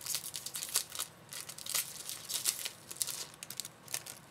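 Foil wrapper of a baseball trading-card pack being torn open and crinkled by hand: a run of irregular, crackly rustles and rips.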